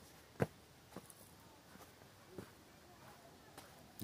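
Faint footsteps on a dirt trail: a few soft, unevenly spaced steps, the clearest about half a second in.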